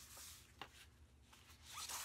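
Cardstock scrapbook pages being handled and slid across a cutting mat: a faint paper rustle with a light tap about a third of the way in, swelling into a louder sliding sound near the end.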